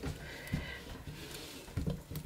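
Memento ink pad dabbed onto rubber stamps mounted on a clear stamp plate: faint soft taps, one about half a second in and a few more near the end.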